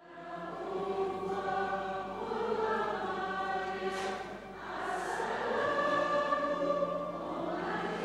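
Choir singing in harmony, voices holding long notes.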